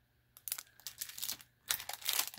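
Small clear plastic packaging bags crinkling in short, irregular bursts as they are handled, starting a moment in and growing louder near the end.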